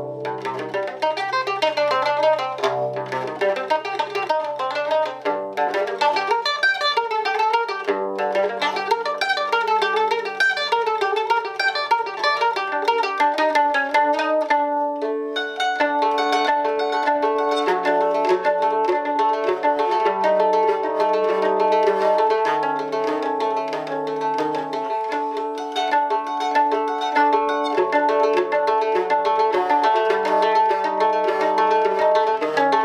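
Liuto cantabile, a five-course mandoloncello tuned e'-a-d-G-C, played solo: a fast unbroken run of arpeggiated plucked notes ringing over a recurring low bass note.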